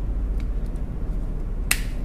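A plastic part of a Schneider contactor snapping into place with one sharp click near the end, after a few faint handling ticks: the part latching home as the contactor is reassembled.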